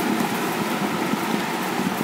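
Steady background noise with no distinct events, a continuous even hiss.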